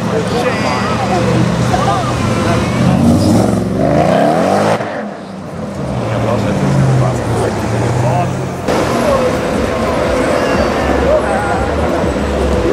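Renntech-tuned Mercedes E55 AMG's supercharged V8 revving and accelerating hard. The revs rise to a peak, then cut off suddenly about five seconds in, and the engine runs on again as the car pulls away. Crowd voices are heard alongside it.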